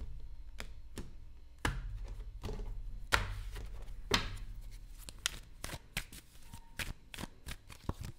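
A tarot deck being handled and shuffled by hand, giving a string of sharp card clicks and taps.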